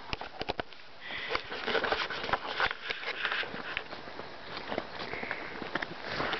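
A person's sniffing and breathing close to the microphone, strongest about a second to three and a half seconds in, with scattered clicks and rustles.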